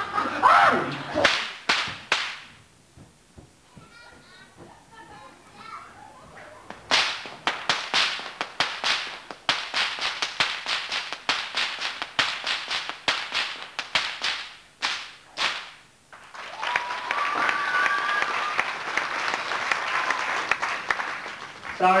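Stockwhips being cracked: a few sharp cracks at first, then after a pause a fast, continuous run of cracks lasting about nine seconds. The cracking gives way to audience applause.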